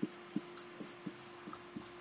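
Pen writing on a sheet of paper: faint, irregular light taps as the pen strokes and lifts, about seven in two seconds, over a faint steady hum.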